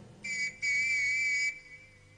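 Whistle blown twice, a short blast and then a longer, steady one of about a second, by a uniformed policeman.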